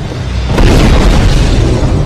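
A loud explosion: a deep boom that builds about half a second in and keeps rumbling.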